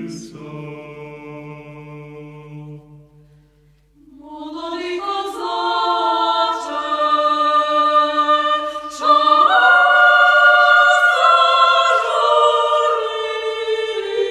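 Unaccompanied chamber choir singing a Ukrainian folk-song arrangement in sustained chords. One phrase fades to a brief lull about four seconds in, then a new phrase enters and swells, fuller and louder from about nine seconds.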